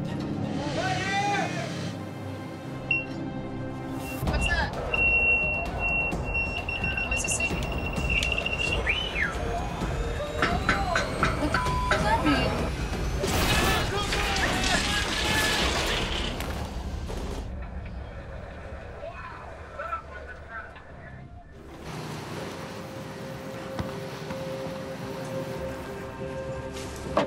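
Dramatic TV background music with deckhands shouting over it. A few seconds in, a steady high electronic buzzer sounds for about five seconds: the deck's signal to the wheelhouse that the crew needs to communicate.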